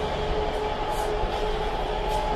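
Steady heavy-vehicle drone: a low rumble with a constant mid-pitched hum on top.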